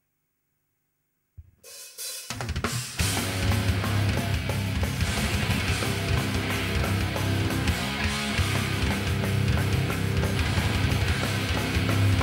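Metal band playing live: after about a second and a half of silence the song starts, with drum kit, cymbals and electric guitars at full volume from about three seconds in.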